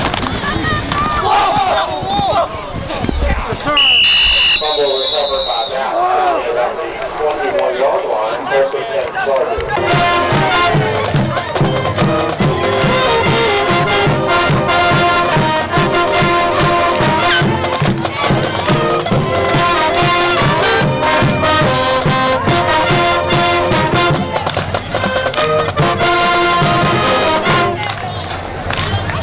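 Crowd voices and a short, high whistle blast, then, about ten seconds in, a high school band in the stands starts playing a brass-led tune over a steady drum beat.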